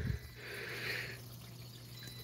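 Faint aquarium water sound: a soft swish of water about halfway through, over a steady low hum.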